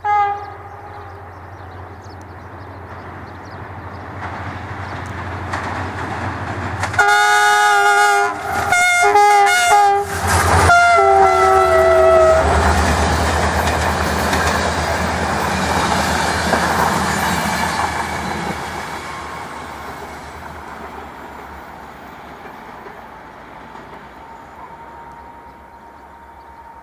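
Diesel locomotive approaching with its engine droning, then sounding its multi-tone horn in several blasts, the last one long and dropping slightly in pitch as it passes. The passenger coaches follow with a rumble and clatter of wheels on rail that fades away; a short horn note is heard right at the start.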